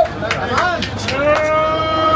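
A group of men calling out and laughing, then from about a second in a long held 'ooh' at a steady pitch, like the start of a celebratory chant.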